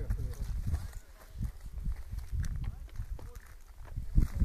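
Faint, indistinct voices over an uneven low rumble on the microphone.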